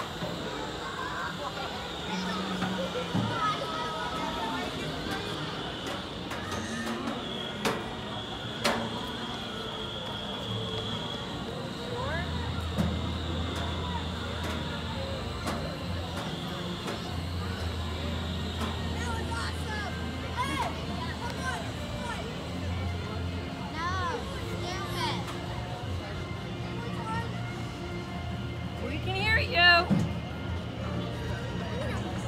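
Spinning amusement thrill ride in motion, with riders' and onlookers' voices rising and falling over music from the ride area. A steady low hum sets in about twelve seconds in, and a louder burst of voices comes near the end.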